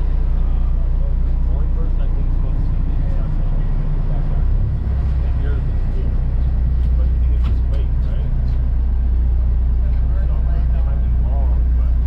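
Steady low drone of a large fishing boat's engines running at sea, with faint voices in the background.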